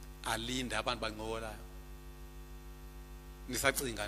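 A man speaks briefly into a microphone, then pauses. In the pause a steady electrical mains hum with a ladder of even overtones carries through the sound system. He speaks again near the end.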